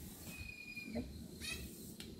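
A bird calling: one held, high whistle and then a short chirp about a second later, over low wind noise on the microphone.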